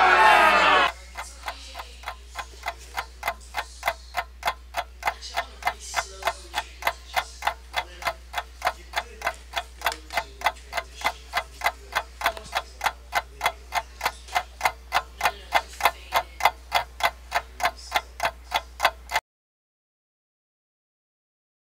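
Clock ticking, a quick, even run of ticks that stops suddenly near the end.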